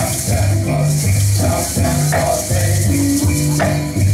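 Song accompaniment with a steady, changing bass line and no singing, overlaid with the rhythmic rattle of 'uli'uli, feathered gourd rattles shaken in time by hula dancers.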